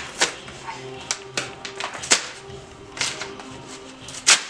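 A paper envelope being torn open by hand, in about six short, sharp rips spread across the few seconds.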